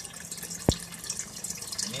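Water from a small submersible aquarium filter pump's return hose splashing steadily onto the surface of the tank, a continuous trickling, with a low steady hum underneath. A single sharp click sounds about two-thirds of a second in.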